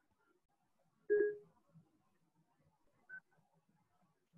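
Two short electronic beeps over near silence: a louder two-tone beep about a second in, then a fainter single beep about two seconds later.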